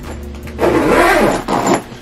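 Large hard-shell spinner suitcase being heaved and shifted, giving a rough scraping, rumbling noise that starts about half a second in and lasts just over a second.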